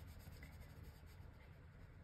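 Near silence: a steady faint low hum of room tone, with a watercolour brush touching wet paper only barely audible.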